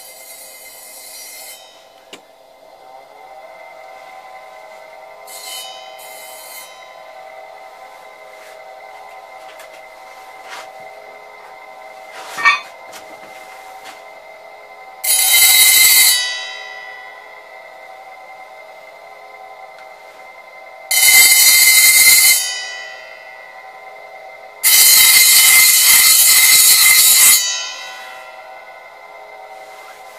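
Power hone's brushless DC motor running steadily with a hum and a thin whine. A small blade is pressed against the spinning 200 mm diamond disk three times, each a loud grinding hiss lasting one to three seconds, the last the longest.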